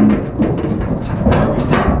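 Cattle hooves trampling on a livestock trailer's metal floor: a loud, rumbling clatter with a few sharp knocks against metal in the second half.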